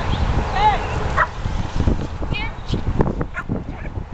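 Corgi barking several times in short, high barks while running, over a low, uneven rumble.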